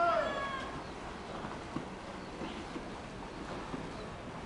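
A high-pitched shout from a spectator, held on one pitch, fading within the first half second, then low poolside noise with faint splashing and a few light knocks.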